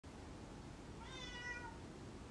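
A cat meowing once, a short meow about a second in that slides slightly down in pitch.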